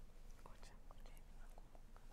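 Faint whispering between two people conferring in low voices, with a few small clicks, close to near silence.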